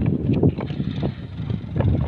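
Footsteps on a dry, stony dirt path: an irregular run of short scuffs and knocks, over a low rumble on the microphone.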